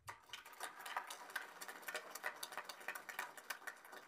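Audience applauding, a dense patter of hand claps that thins out near the end.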